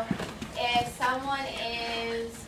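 Indistinct voices, with a few light knocks in the first second.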